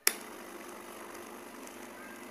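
A sharp click at the very start, then a steady background hum with a faint constant tone, like a small motor or appliance running.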